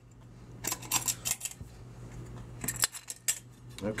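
Metal clicking and clinking from the lid clamps and lid of an oil centrifuge being handled and undone, in two short clusters, about a second in and near three seconds, over a steady low hum.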